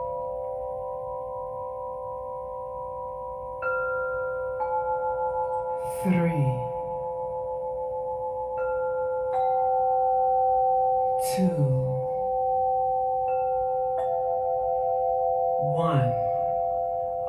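Crystal singing bowls ringing together in a sustained chord. New, higher notes are struck in three pairs, each ringing on and blending into the chord.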